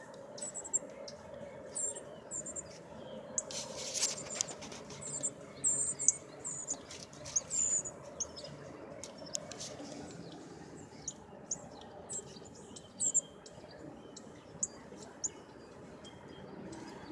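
Northern cardinals giving short, high chip calls, repeated at irregular intervals throughout, with a brief rustling clatter about four seconds in.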